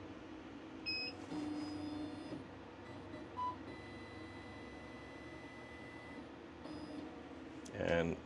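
Thunder Laser Bolt laser cutter running its autofocus: a short electronic beep about a second in and another near the end, with faint motor whines in between and a brief blip about halfway.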